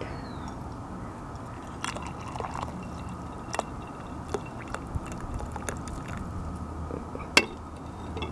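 Fruit tea poured from a glass teapot into a glass cup: a steady stream of liquid, with a few sharp clicks along the way.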